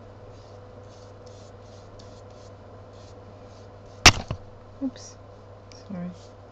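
Quiet handling of art materials on a work table: faint, irregular scratchy strokes over a low steady hum, with one sharp knock about four seconds in, followed by a couple of lighter taps.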